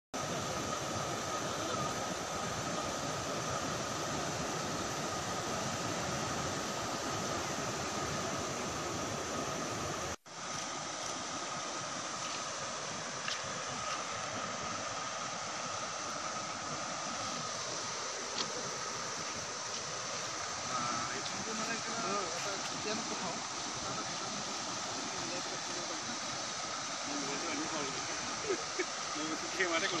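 Fast-flowing floodwater rushing steadily, with faint voices of onlookers near the end. The sound cuts out for an instant about ten seconds in, where two recordings are joined.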